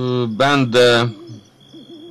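A man's voice making long, drawn-out hesitation sounds between words, with a faint steady high-pitched whine behind it.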